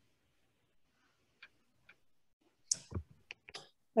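Near silence, then a short run of sharp clicks and a brief noisy burst lasting about a second near the end.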